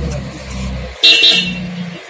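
A passing vehicle's engine rumbles steadily, then a vehicle horn gives a short, loud toot about a second in.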